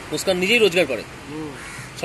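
Crows cawing a few times, mixed with a man's voice.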